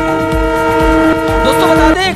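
News-channel transition sting: a loud held chord of several steady tones over a deep pulsing bass, cutting off just before the end.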